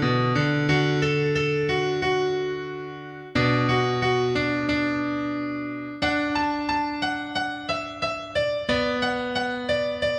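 Piano-style keyboard backing music: slow chords that ring and fade, then about three seconds of quick repeated notes and another held chord near the end.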